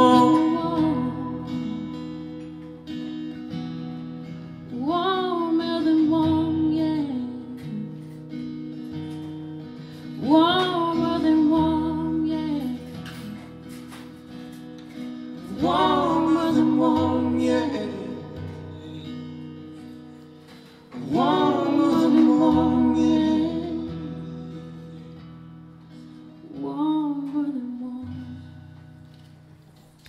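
Live acoustic guitar and singing: about five long sung phrases, one every five seconds or so, each starting loud and fading away over ringing acoustic guitar chords. These are the closing bars of the song, the last phrase softer than the rest.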